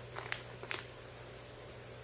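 A few faint crinkles from a plastic food pouch being handled and lifted out of a plastic bucket, all within the first second, over a steady low hum.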